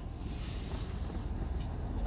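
Steady low rumble of a car's cabin noise, heard from inside the car.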